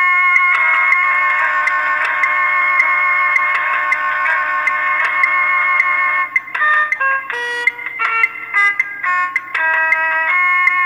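Instrumental bhajan-style melody played in an oboe voice: long held notes, then a run of shorter notes changing pitch from about six and a half seconds in.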